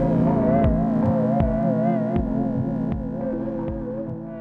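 Loop-based electronic music played back on a 1010music Blackbox sampler: a sustained, wavering synth tone over steady bass notes and a regular beat of low kicks and light ticks. It is slowly fading out.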